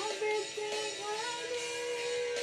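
A woman and a man singing a worship song over a recorded minus-one backing track; the melody climbs in steps and settles on a long held note near the end.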